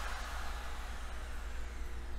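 Steady low electrical hum with faint hiss. No distinct snip of the cutters stands out.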